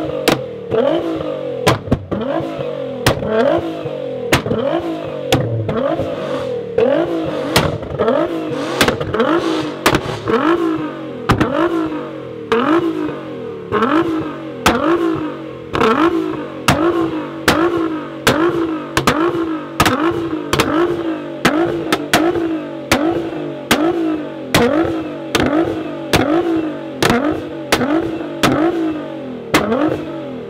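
Nissan GT-R's twin-turbo V6 revved in short, repeated throttle blips about once a second through an Armytrix exhaust. Each rev rises sharply and falls back, with loud pops and bangs from the exhaust throughout.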